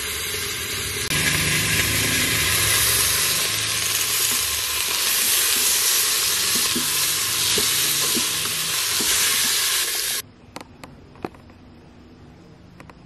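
Carrots, onions and peppers sizzling in a hot pot while being stirred with a spoon, with a few light knocks of the spoon. The sizzling gets louder about a second in and stops abruptly near the end.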